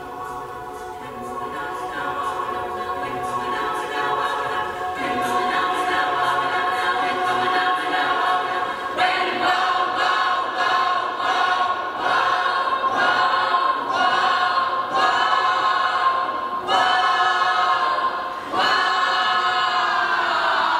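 Mixed youth choir singing a cappella, the held chords swelling in loudness over the first few seconds. From about halfway through, the singing turns into a run of short, rhythmically accented chords.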